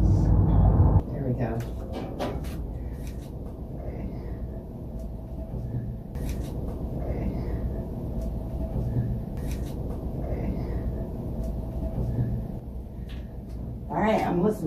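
Amplified, hissy replay of a faint, indistinct voice-like sound that recurs several times, presented as a spirit voice saying "thank you". It follows a loud low rumble that cuts off suddenly about a second in.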